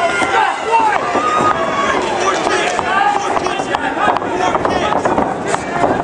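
Spectators shouting and yelling over one another at ringside, with a few sharp smacks among the voices.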